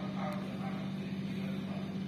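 Steady low electrical hum over faint room noise.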